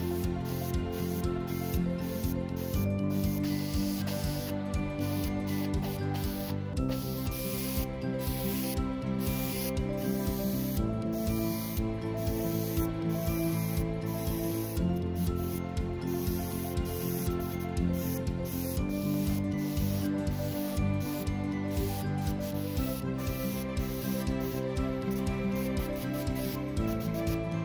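Iwata HP-M2 airbrush spraying in short hissing bursts that stop and start many times, over background music.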